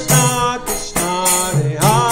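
Devotional kirtan: voices singing a chant together, with hand cymbals (kartals) struck in a steady beat about twice a second.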